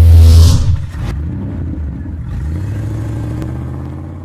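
Logo sting sound effect: a low synthesized drone swells to a peak, breaks into a brief whooshing hit about half a second in, then settles into a low rumbling tone that slowly fades.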